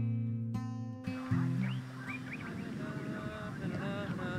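Acoustic guitar music that cuts off about a second in, its last low notes fading out, followed by outdoor ambience with a few short rising chirps.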